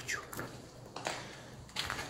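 Footsteps crunching on rubble and grit on a concrete floor, a few separate crunches and scuffs.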